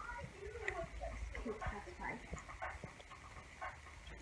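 Faint, indistinct voices of people talking in the room, over a low steady rumble.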